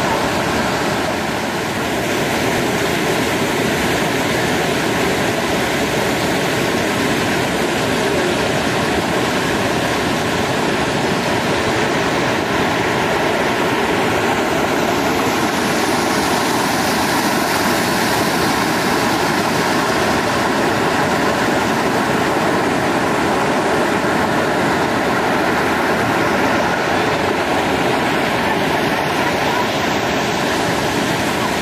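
Waterfall: a loud, steady rush of falling water.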